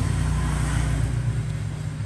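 Steady low rumble with a hum, like a motor vehicle engine running in the background.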